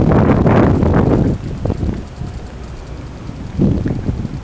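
Wind buffeting the microphone: a loud rushing gust for the first second or so, easing off, then a shorter gust near the end.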